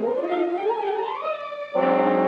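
Dramatic film score music: a sliding tone climbs in pitch for about a second and a half, then a loud sustained chord breaks in near the end, building tension.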